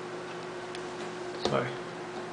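Hands handling a plastic tablet and pulling out its stylus: a few faint clicks, then a louder click about one and a half seconds in, over a steady faint hum.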